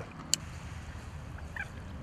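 Low, steady outdoor background noise with one sharp click about a third of a second in and a faint, brief chirp near the end.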